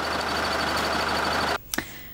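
A vehicle engine idling: a steady low rumble and hiss with a faint high whine, cutting off suddenly about one and a half seconds in.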